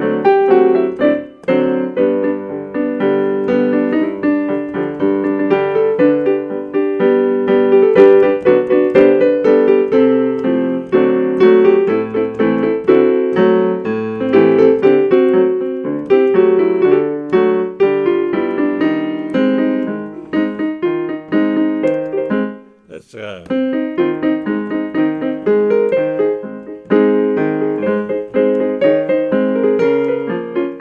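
Electronic keyboard with a piano sound playing an old TV theme tune instrumentally, chords and melody over a half-time march beat. The playing breaks off briefly about 23 seconds in, then carries on.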